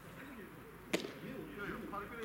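A baseball smacking into a catcher's leather mitt with a single sharp pop about a second in, as a pitch is caught. Faint voices of players carry in the background.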